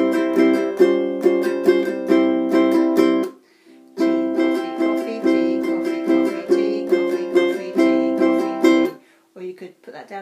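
A ukulele strummed in a flamenco-like pattern on two chords, a C and a barred shape, several strums a second. The strumming breaks off briefly after about three seconds, resumes, and stops about a second before the end.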